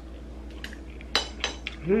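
Chopsticks set down on a ceramic plate: two sharp clinks a little over a second in, then a fainter tap.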